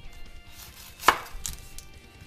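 Chef's knife cutting down through a yellow onion onto a bamboo cutting board, with one sharp knock of the blade on the board about a second in and a few fainter taps after it.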